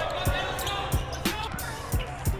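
Music with a steady beat, with sharp hits about three times a second, playing over basketball game sound: a ball bouncing on a gym floor.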